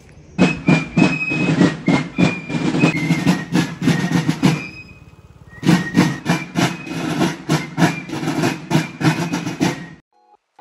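Marching band of drums with a high piping melody, playing a quick march in steady drum strokes of about three to four a second. The sound breaks off for about a second near the middle and then resumes.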